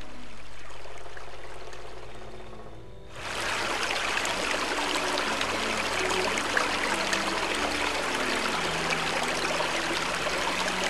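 Soft background music, then about three seconds in the steady rush of a small stream cascading down a rock face cuts in suddenly, with the music still faintly beneath it.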